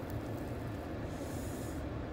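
Steady low rumble inside a car, with a soft, brief rustling hiss about a second in as a large, soft, warm chocolate chip cookie is pulled apart by hand.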